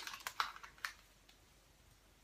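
A few faint, light clicks in the first second as a 1-inch Hot Tools curling iron is handled and its clamp works on a section of hair, then near quiet.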